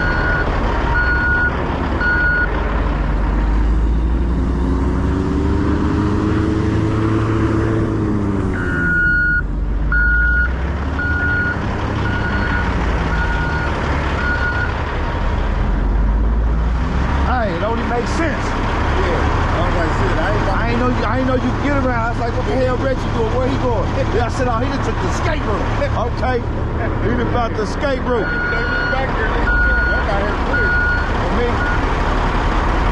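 Heavy diesel engines running, with a backup alarm beeping about once a second in several runs, stopping and starting again. Several seconds in, one engine revs up and back down.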